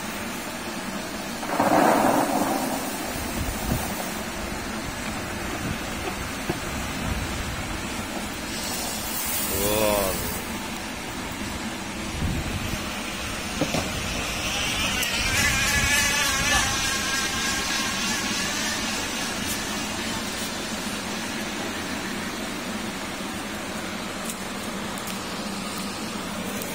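Electric shallot-seed sieve running, its cage rattling a load of small shallot bulbs with a steady rumbling clatter. There is a louder rush of bulbs about two seconds in.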